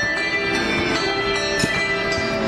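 A set of handbells rung by several players in turn, playing a tune: clear bell tones struck one after another, each ringing on and overlapping the next.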